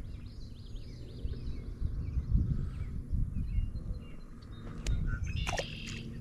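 Small birds chirping over a low, uneven rumble, with a few sharp clicks near the end.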